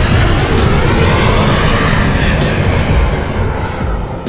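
Jet aircraft noise, a loud steady rush, mixed with background music.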